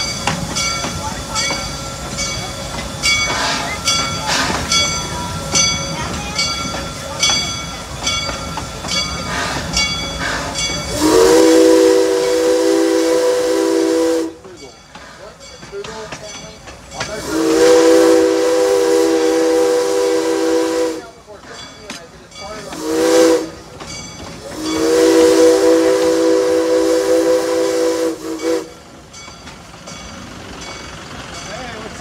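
Propane-fired steam locomotive running with a steady hiss and a regular beat, then its chime whistle sounding a chord of several tones in the grade-crossing pattern: long, long, short, long.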